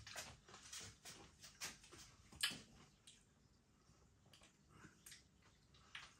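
Faint, scattered crunches of someone chewing crispy air-dried salami crisps, thinning out after about three seconds.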